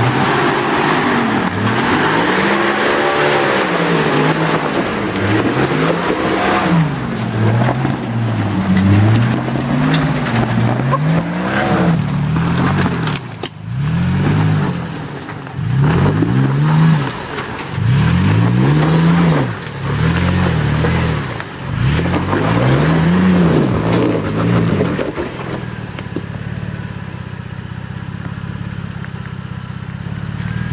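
Four-wheel-drive vehicle's engine revving up and down over and over as it climbs a steep dirt track, its pitch rising and falling every second or two. About five seconds before the end it settles to a steadier, quieter drone.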